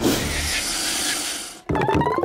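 A steady hissing noise effect that fades out about a second and a half in, followed by cartoon music with a slowly rising tone and light ticking.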